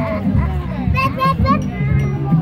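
Children's voices and play chatter over background music, with a few short high calls from a child about a second in.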